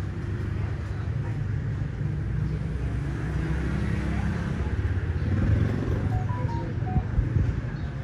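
Low rumble of road traffic, with a motor vehicle passing and growing louder about five seconds in.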